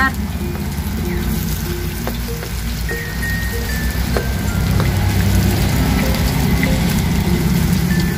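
Cheese-filled corn masa rolls frying in hot oil in a pan, a steady sizzle that swells slightly about halfway through.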